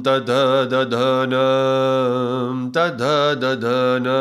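A man chanting Sanskrit alphabet syllables in a sustained drone on one low, steady pitch. Short breaks separate the syllables, with a longer pause just before three seconds in.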